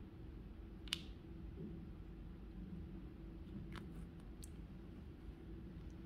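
A few faint, sharp clicks as fingers pull apart a clear 5-HTP capsule and tip out its white powder, the crispest about a second in and two more nearer the middle, over a low steady room hum.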